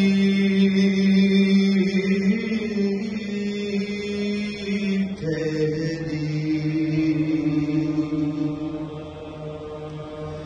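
Unaccompanied chanting of a salam, a Shia mourning recitation for Imam Hussain: low voices hold long drawn-out notes, stepping up in pitch about two seconds in and shifting again about halfway through, then easing off slightly near the end.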